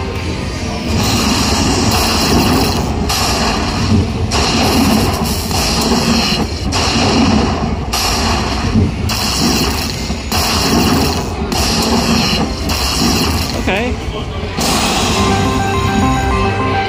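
Dollar Storm Emperor's Treasure slot machine playing its bonus-award sound effects as a $100 win is tallied. It is a run of loud noisy bursts with short breaks between them, over the game's music.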